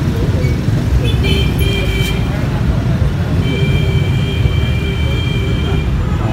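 Steady low rumble of road traffic, with two held high-pitched tones: a short one about a second in and a longer one from about three and a half seconds to near the end.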